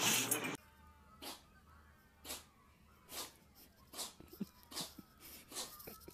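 A cat sneezing again and again: short, sharp sneezes roughly once a second, after a louder stretch of sound that cuts off about half a second in.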